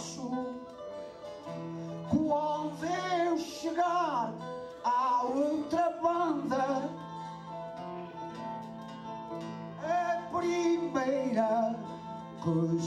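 A man sings Portuguese cantoria verse into a microphone in short phrases, over steady plucked guitar accompaniment. The voice drops out for a few seconds past the middle, leaving the guitar alone, then comes back near the end.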